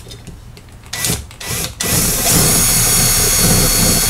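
Cordless impact driver driving a sheet metal screw into a metal flagpole mount. Two short blips about a second in, then from about halfway it runs steadily with its rapid hammering.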